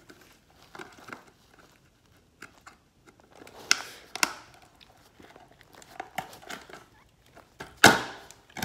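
Scattered rustling and crinkling with light clicks and knocks close to the microphone, with a louder pair of knocks about four seconds in and another just before the end.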